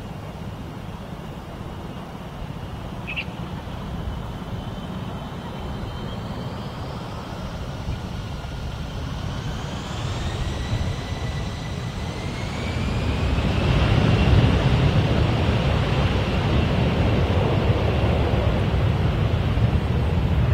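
Twin-engine jet airliner's engines spooling up from behind, a whine rising in pitch over several seconds, then running at takeoff thrust, clearly louder and deeper, as the airliner starts its takeoff roll.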